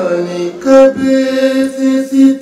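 A male voice chanting a soz lament without words, holding a steady pitch in a series of pulses.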